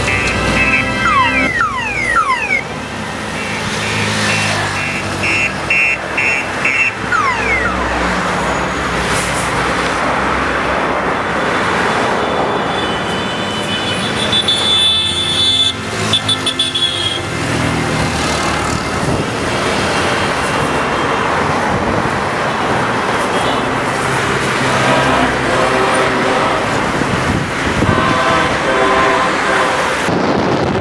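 Road traffic heard from a moving car, with steady engine and tyre noise. Horns beep several times in quick succession a few seconds in, and a longer horn note sounds around the middle.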